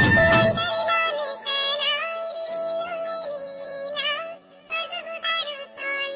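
A recorded song: a sung melody with long, wavering held notes over backing music, with a brief break about four and a half seconds in.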